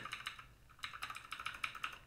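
Typing on a computer keyboard: a run of quick key clicks, a brief lull about half a second in, then a dense run of keystrokes.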